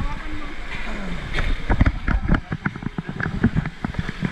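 Wave pool water splashing and slapping close to the microphone, with many short, sharp slaps and a low rumble that eases off a little past halfway. People's voices are mixed in.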